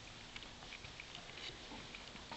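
Faint room noise with many small, scattered clicks and ticks.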